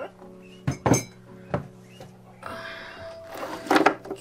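A sheet of watercolour paper and its pad being handled on a tabletop: a few sharp knocks in the first second and a half, then paper rustling, loudest near the end. Faint background music runs underneath.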